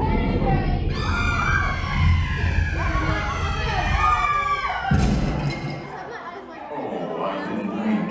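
Haunted Mansion stretching-room show effect in the blackout: a shrill scream wavering up and down over a low rumble, ended by a sudden crash about five seconds in. Quieter scattered voices of the riders follow.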